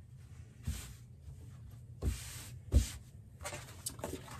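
Cotton fabric rustling and sliding across a cutting mat in short bursts as it is folded by hand, with one sharper soft thump about three-quarters of the way through.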